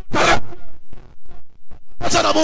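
A run of rasping scrapes: one louder, longer scrape near the start, then about five short ones.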